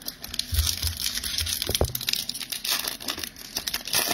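Foil wrapper of a Magic: The Gathering Kaldheim set booster pack crinkling and tearing as it is ripped open by hand, a fast, dense crackle.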